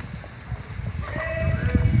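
Low, irregular rumble of wind and handling on a phone microphone. About a second in, a steady held tone with overtones starts and lasts about a second.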